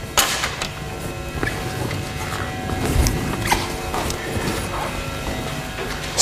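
Creaks and a few short knocks from a person moving about at a chalkboard, picked up close by a clip-on microphone.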